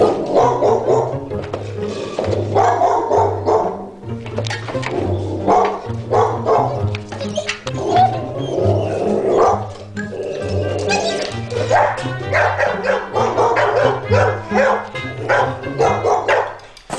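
Background music with a steady, pulsing bass line, and a dog barking repeatedly over it.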